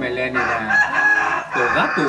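A rooster crowing once, a harsh call held for about a second starting about half a second in, with men's voices just before and after it.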